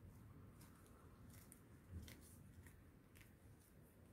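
Near silence, with a few faint clicks and a soft bump about two seconds in: hands handling a piece of sugar paste and setting it down on a cutting mat.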